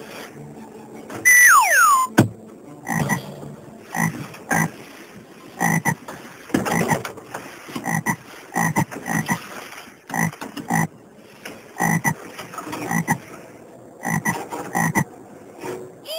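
A frog croaking over and over, short croaks coming one or two a second, after a loud falling whistle about a second in.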